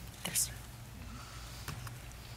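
A brief soft whisper with a hiss about a third of a second in, then quiet room tone with a couple of faint ticks near the end.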